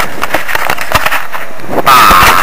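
Irregular knocks and rustle from a handheld camcorder being swung about while its holder walks, ending with a short voiced "ah".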